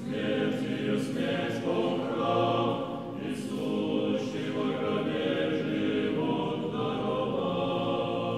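A choir singing a slow chant, voices holding long notes together and moving to new ones every second or two.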